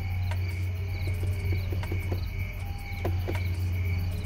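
Crickets chirping steadily over a constant low hum.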